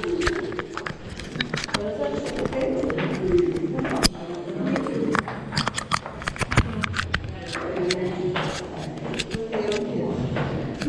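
Footsteps on metal spiral-staircase treads, many sharp taps and clanks as people walk down, over indistinct voices talking.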